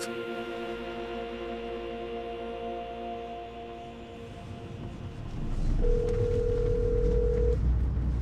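A sustained music chord holds and then fades out. A car cabin's low rumble comes up, and about six seconds in a phone's ringing tone for an outgoing call sounds once, lasting nearly two seconds.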